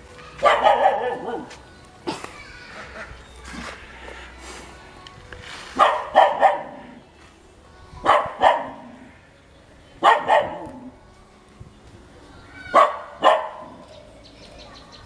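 A dog barking: a run of barks about half a second in, then double barks roughly every two seconds.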